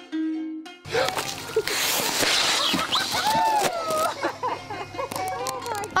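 A bucketful of water dumped out and splashing down, a loud rush of splashing starting about a second in and lasting a couple of seconds, over background music.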